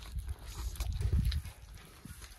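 Lion cubs feeding on a raw carcass: wet chewing and tearing at meat, with low growls that are loudest a little past the middle.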